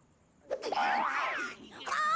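After a brief moment of quiet, an animated cartoon character makes a wordless vocal exclamation that slides up and down in pitch, and a second wordless voice starts near the end.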